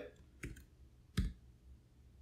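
Two computer keyboard keystrokes: a light one about half a second in and a louder one just past a second, which ends the line and enters it.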